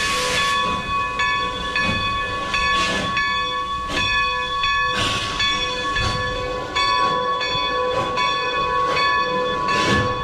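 A steam locomotive pulling out, its exhaust chuffing slowly about once a second with steam hissing, the cylinder cocks venting at the start. A steady high ringing tone runs underneath.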